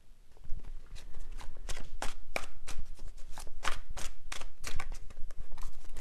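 A deck of tarot cards being shuffled by hand: a quick, irregular run of card snaps and flicks, several a second, starting about half a second in.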